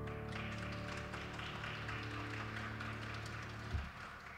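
The last chord of a grand piano dies away as people clap. A short low thump comes near the end.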